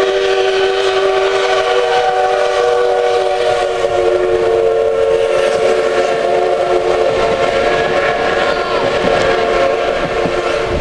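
C11 steam locomotive's whistle held in one long multi-tone blast, dropping slightly in pitch about two seconds in as the engine goes by, over the rumble of the passenger coaches rolling past.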